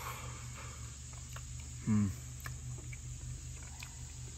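A man tasting a forkful of rice: faint small mouth clicks of chewing and one short, falling appreciative "mm" about two seconds in, over a steady low hum.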